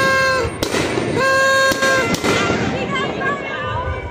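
Fireworks going off overhead in sharp bangs, over the voices of a large outdoor crowd. A steady high note is held twice, about a second each time: once just at the start and again about a second in.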